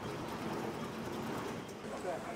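Steady background noise of an indoor station concourse around a running escalator: an even hum and hiss with no distinct events.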